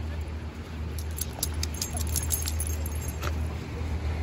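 Light metallic jingling, a quick run of small clinks from about one second in to past three seconds, over a steady low rumble.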